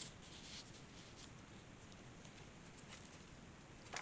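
Faint rustling of paper as cards and pages of a handmade paper journal are handled, with a short louder paper sound near the end as a page is turned.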